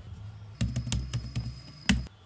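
HP laptop keyboard being typed on: a quick run of key clicks starting about half a second in, ending with one louder keystroke near the end.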